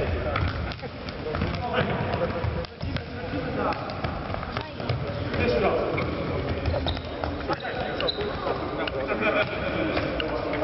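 Indoor futsal in a sports hall: the ball being kicked and thudding on the hard floor, footsteps, and the players' indistinct shouts and calls. All of it echoes around the hall.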